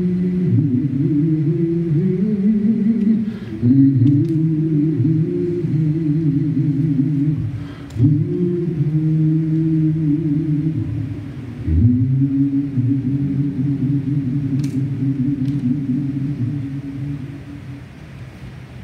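A slow, low chant sung on long held notes, in four phrases with brief breaks between them.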